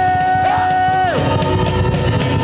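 A young man singing one long, high held note into a microphone, with a band playing underneath. About a second in, the note slides down and ends, and the band carries on.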